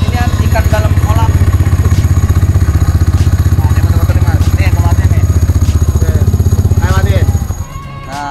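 Vespa Primavera scooter's single-cylinder four-stroke engine idling, with the jingling rattle of its CVT clutch. The rattle comes from the clutch, not the variator, and is typical of that clutch rather than a fault. The engine is switched off about seven and a half seconds in.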